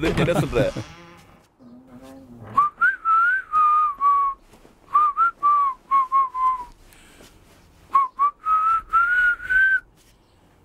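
A man whistling a tune in short phrases of clear, slightly gliding notes, starting about two and a half seconds in, with brief pauses between phrases.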